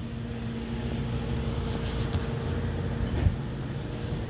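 Steady mechanical hum with two held tones, which stop with a short knock a little after three seconds in.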